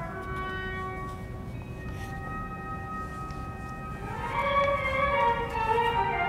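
Symphony orchestra playing sustained chords softly, then swelling louder about four seconds in as lines climb upward.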